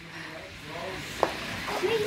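Faint background voices over outdoor noise, with one short high tone a little past halfway.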